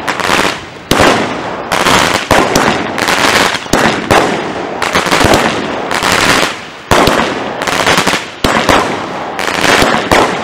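A 19-shot consumer firework minicake firing shot after shot. Sharp bangs come every second or so over a continuous dense rushing, crackling noise from the bursting stars.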